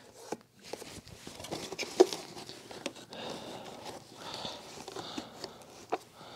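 A paper vacuum dust bag rustling as its cardboard collar is worked into the bag compartment of a Bosch canister vacuum, with light plastic handling knocks and one sharp click about two seconds in.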